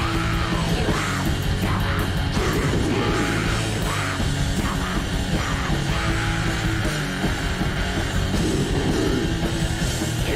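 Death metal song playing, with heavy distorted guitar, drums and screamed vocals, in a rough-sounding recording.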